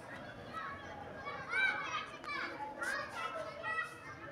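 Distant children calling out and chattering in short, high-pitched bursts: children playing during a school break.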